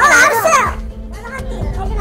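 Speech over steady background music: loud talking in the first second, then quieter talk.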